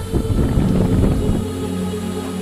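Wind buffeting the camera microphone with a low rumble, giving way about one and a half seconds in to steady, low, held notes of background music.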